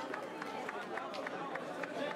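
Fencing hall ambience: a background babble of indistinct voices, with a quick, irregular series of light taps and clicks, about six a second.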